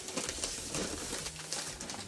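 A plastic snack bag of popcorn crinkling as it is handled, a run of small crackles.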